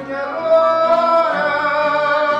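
Male fado singer holding a long sung note from about half a second in, accompanied by Portuguese guitar and classical guitars.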